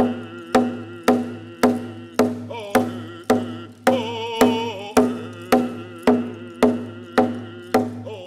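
A single-headed hide hand drum struck with a beater in a steady beat of about two strokes a second, with a man singing over it.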